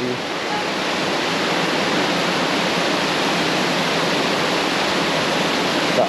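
Heavy tropical downpour: rain falling hard as a steady, loud hiss that does not let up.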